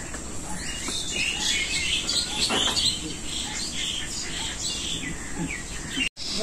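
Birds chirping and twittering: many short, overlapping high calls throughout.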